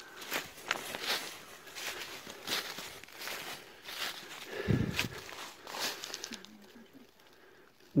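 Footsteps through deep dry fallen leaves, a rustle with each step at an uneven walking pace, with a dull low thump about five seconds in; quieter near the end.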